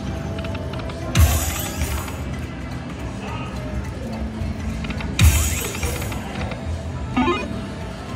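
Aristocrat Karma Kat video slot machine sounds: electronic game music with two sudden bursts of a spin sound effect, each a low thump with a bright hiss, about four seconds apart as the reels are spun. A short chime follows near the end.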